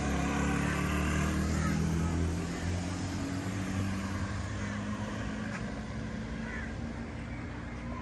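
A vehicle engine running at a steady pitch. It is loudest for the first couple of seconds, then continues a little quieter.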